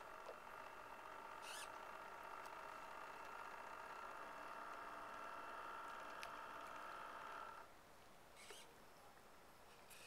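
RC model lobster boat's motor whining steadily at a few fixed pitches, then cutting off suddenly about three-quarters of the way through as the boat is left to coast. A few short high chirps sound over it.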